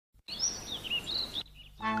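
Chirping, whistling bird calls over a steady hiss for about a second, then a short pause. A voice and music start near the end.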